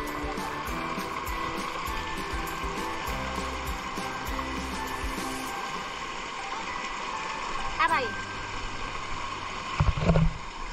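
Background music with a steady beat over a fast stream rushing across rocks; the music fades out about halfway, leaving the steady rush of water. Near the end comes a short call that falls in pitch, then a couple of loud knocks.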